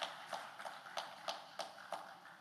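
Audience clapping in a slow, even rhythm, about three claps a second, fairly faint, in acknowledgement of a thank-you.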